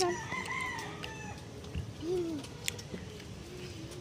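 A rooster crowing: a long, steady crow ends just after the start, and a shorter rising-and-falling call follows about two seconds in.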